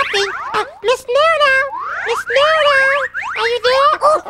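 Cartoon comedy sound effects: a string of springy, boing-like sliding tones, each gliding up or wobbling in pitch, several in a row.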